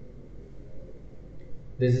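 Faint steady background noise from an open microphone during a pause in a man's speech, which resumes near the end.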